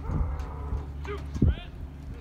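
A person's long, drawn-out shout, followed by short shouted calls about a second and a half in.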